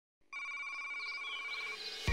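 A steady electronic tone with overtones, ringtone-like, starting about a quarter second in and fading just before the end, with faint wavering chirps above it.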